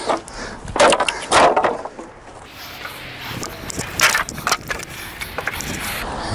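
Hammer blows on wooden pallets: several sharp knocks as the pallet boards are struck and broken apart, the loudest about a second in and another near four seconds, with lighter knocks and wood cracking and clattering between them.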